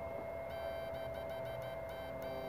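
Steady electronic whine from a running 16D plastic-box electrofishing machine, with faint irregular ticking from about half a second in.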